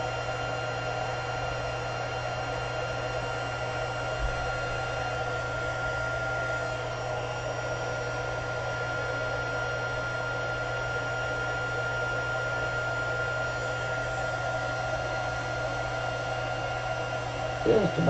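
Handheld craft heat tool blowing steadily, with a thin high whine over its fan, as it heats wet puff paint until the paint dries and puffs up.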